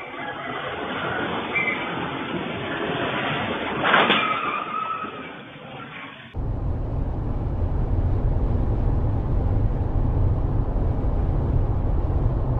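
Street traffic noise with one sudden loud impact about four seconds in, a vehicle collision. After about six seconds, a steady low rumble of road and engine noise heard from inside a moving car.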